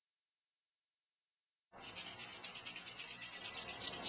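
Dead silence for under two seconds, then outdoor ambience cuts in abruptly: a steady chorus of crickets chirping in fast, even pulses.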